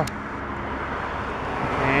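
Road traffic noise: a passing car's steady rumble that grows slowly louder toward the end.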